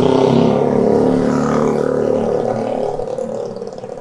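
A car driving past close by, its engine note and tyre noise loudest at first and fading steadily as it moves away.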